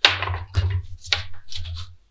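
Handling noise from fitting an oxygen hose connection: several sharp clicks and rustles over a low hum.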